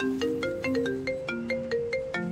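Mobile phone ringtone: a bright marimba-like melody of quick single notes, about five a second, playing as an incoming call rings.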